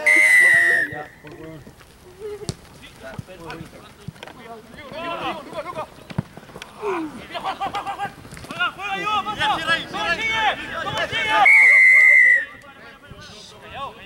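Referee's whistle blown twice in a rugby match: a sharp blast of about a second at the start and another about eleven and a half seconds in, each pitch sagging slightly. Players shout between the blasts.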